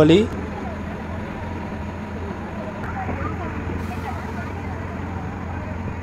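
Bus engine running steadily with a low drone, heard from inside the moving bus, with a brief hiss a little before the middle.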